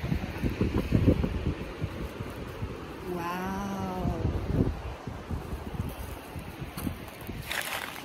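Wind buffeting a phone microphone, with one drawn-out vocal sound from a person lasting over a second, about three seconds in.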